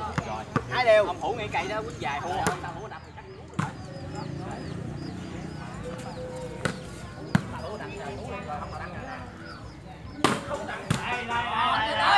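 A volleyball being struck by players' hands and arms during a rally: about six sharp slaps, a second or a few seconds apart. Men's voices call out at the start and again near the end.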